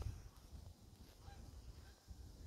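Faint, distant trumpeter swans honking a couple of times over a low rumble.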